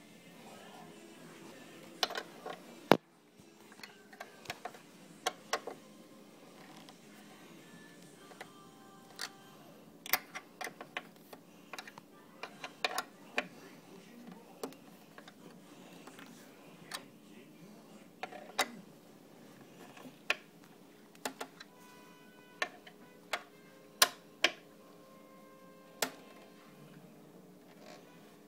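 Scattered sharp clicks and knocks, irregularly spaced, from tools and hands working at the screws of a table's metal under-frame brackets, over faint background music.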